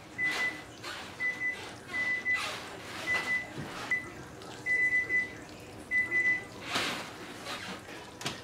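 Thick caramel syrup boiling in a saucepan, popping and bubbling. Over it, a short high electronic beep repeats about once a second.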